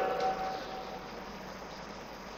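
A man's amplified voice ringing on through a public-address system and dying away within the first second, with a faint sustained tone fading out with it. A steady low hiss of room tone is left.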